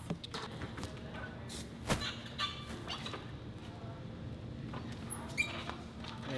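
Gym background sounds: scattered light knocks and clicks, one sharper knock about two seconds in, and a brief high squeak near the end.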